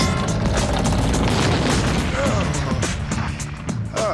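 Cartoon sound effect of a building wall being smashed in: a loud crash at the start, then a rumbling wash of crumbling debris, over background music.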